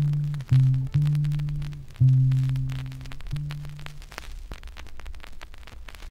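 The last few held low notes at the end of a Ghanaian highlife track from a 1975 vinyl LP, each fading, with the music dying away about four seconds in. Then only the record's surface crackle and hiss remain in the gap between tracks.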